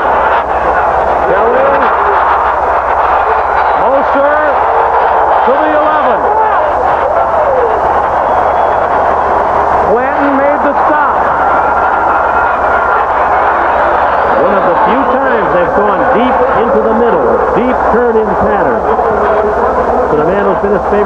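Stadium crowd at a football game: a large crowd shouting and cheering steadily, many voices overlapping.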